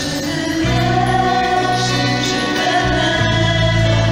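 A small vocal group singing a slow carol in harmony into microphones, backed by a live band with a sustained low bass note that changes about half a second in and again near three seconds.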